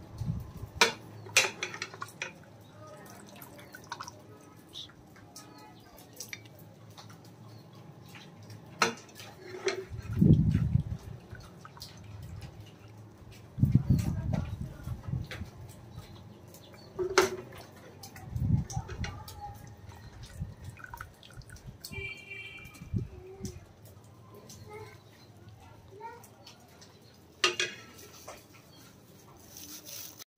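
A steel ladle scooping mutton trotter curry out of an aluminium pressure cooker into a ceramic bowl: liquid pouring and dripping, with scattered clinks of the ladle against pot and bowl and a few dull low thumps.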